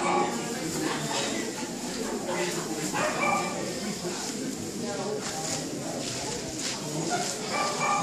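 A dog barking in several short calls spread through these seconds, with people talking in the background.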